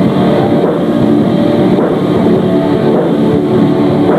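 Metal band playing live: a dense, sustained wall of distorted electric guitars over drums.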